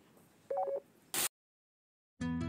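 A short electronic beep made of two steady tones sounding together, about half a second in, followed just after a second by a brief burst of noise and then an abrupt cut to dead silence.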